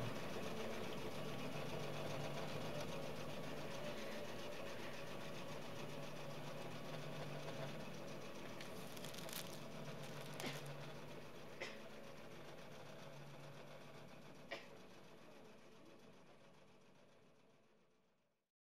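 Long-arm quilting machine running steadily with a low hum, slowly fading out, with a few light clicks in the second half.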